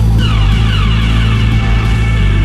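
Electronic hip-hop track: a heavy, sustained bass, with a cluster of falling synth tones coming in just after the start.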